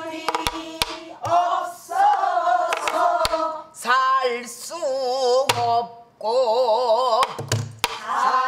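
Pansori singing by a woman who accompanies herself on a buk barrel drum. The long notes in the second half carry a wide, slow vibrato. Sharp stick strikes and a few low hand thumps on the drum punctuate the singing.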